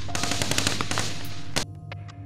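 Rapid gunfire in close, irregular volleys over a dense noisy din. It cuts off abruptly about one and a half seconds in, leaving a soft music bed with sustained tones.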